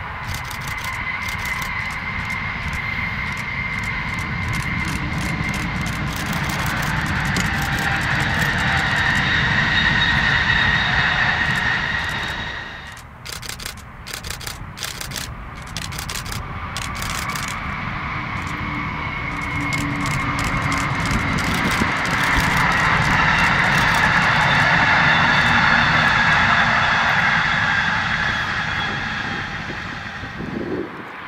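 Amtrak high-speed electric trainset passing at speed: a rushing noise with a high whine that builds to a peak, drops off suddenly, then swells to a second peak and fades away.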